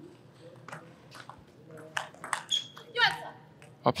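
Table tennis rally: the plastic ball clicks sharply off the rackets and the table about half a dozen times over two seconds. A short voice follows near the end.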